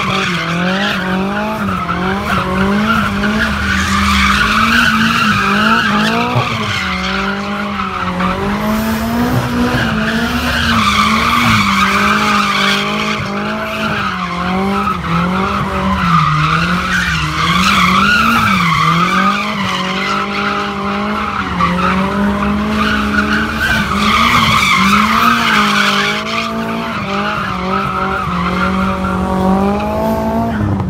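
A car drifting in circles: its engine is held high in the revs, wavering up and down with the throttle, over continuous tyre squeal that swells and eases every six seconds or so as the car comes round.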